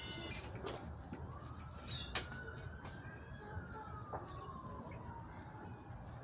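A faint siren wailing: one slow tone rises for about three seconds, then falls away, with a sharp click about two seconds in.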